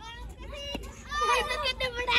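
Children's voices, shouting and calling out as they play, growing louder about a second in.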